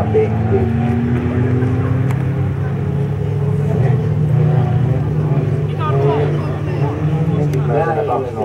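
Folk race cars' engines running together: a steady low drone, with one engine note rising slightly in the first two seconds.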